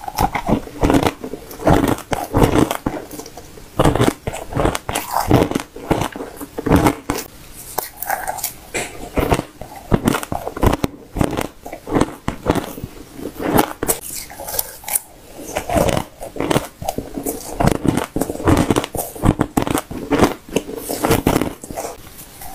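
Close-up crunching and chewing of shaved ice and frozen ice chunks: quick runs of sharp crunches with short pauses between mouthfuls, with a metal spoon scooping ice from a steel pot.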